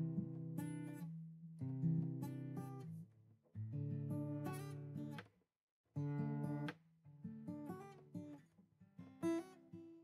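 Acoustic guitar strummed in short chord phrases, about six of them, each left ringing for a second or so and then stopped, with brief silent gaps between.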